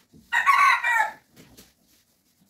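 A rooster crowing once, a short loud crow lasting under a second.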